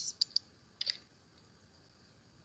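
Three or four sharp clicks at a computer in the first second, made while switching documents on a shared screen, then only faint hiss.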